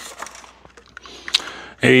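Faint handling clicks and rustles as a small digital temperature gauge and its sensor wire are picked up, with one sharper click a little over a second in.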